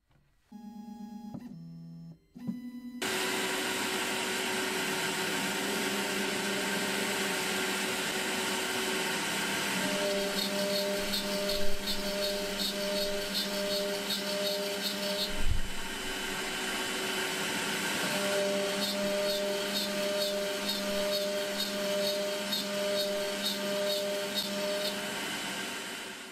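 Makera Z1 desktop CNC mill running an M4 thread mill to cut threads in a hole in aluminium: after a few seconds of short stepped tones, the spindle runs steadily with a pulsing tone over it twice, as the cutter works round the hole. A single brief thump about halfway through.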